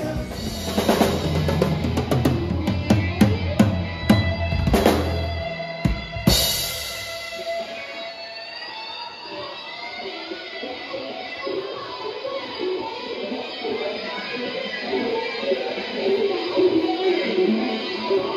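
Live rock band playing a cover: drum kit, bass and electric guitar together with cymbal crashes, until about six seconds in the drums and bass stop and the guitar carries on alone.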